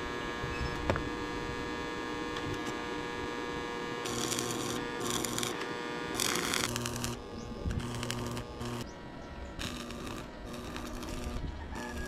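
Stick (arc) welding on a steel pipe joint: the arc crackles and sizzles in repeated bursts of a second or so, starting about four seconds in, as the weld is laid in short runs. A steady electrical hum runs underneath.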